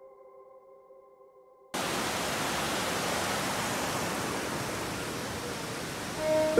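Steady rushing of a mountain river over boulders, cutting in abruptly about two seconds in after a quiet stretch with a few faint steady tones.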